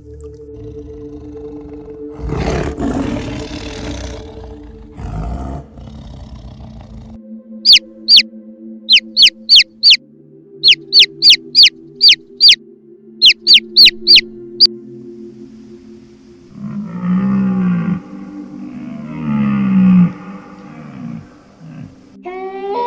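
Sea waves breaking, with two loud crashes of surf, then a baby chick peeping: about twenty loud, high, falling peeps in short runs. Near the end a red deer stag roars twice, deep and rough, falling in pitch.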